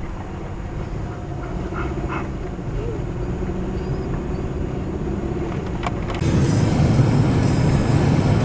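Car cabin road and engine noise while driving, a steady low rumble growing gradually louder. About six seconds in it steps up abruptly to a louder rush of tyre and road noise at highway speed.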